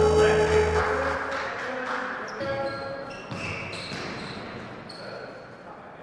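Background music fading out over the sound of a basketball game on a hard court: a ball bouncing and players' voices.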